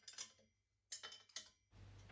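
Near silence with a few faint metallic clicks as a chrome exhaust header pipe and its fittings are handled against the engine's exhaust port.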